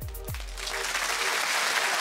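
Studio audience applauding, swelling up as background music with a low bass fades out within the first second.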